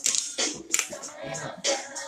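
Screw cap being twisted off a glass liquor bottle: a few sharp clicks and handling noises.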